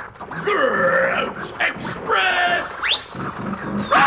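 Short grunting and groaning voice sounds, then, about three seconds in, a whistle that shoots up steeply and glides slowly down.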